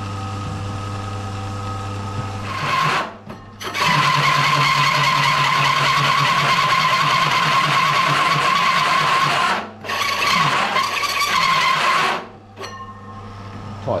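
Drill press running with a hole saw cutting through a metal bracket: the spindle hums steadily, then from about four seconds in the saw bites in with a loud, steady squealing cut, breaks off briefly near ten seconds, cuts again for two seconds and eases off, leaving the motor humming.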